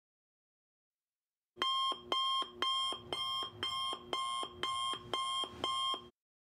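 Smartphone alarm ringing: a repeating electronic melody of stepped beeping tones, about two cycles a second, starting about a second and a half in.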